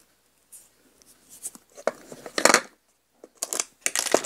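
Small ornaments and a little pencil being handled in a plastic compartment tray: short clusters of light clicks and rattles, loudest about two and a half seconds in and again near the end.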